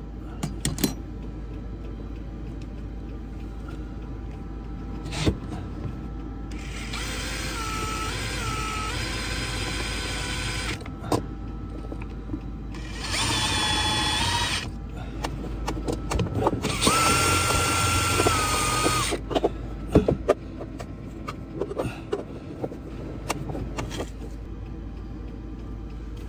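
Cordless drill run in three bursts of a few seconds each, its motor whine wavering in pitch as the trigger is eased, with clicks and knocks of handling between the runs.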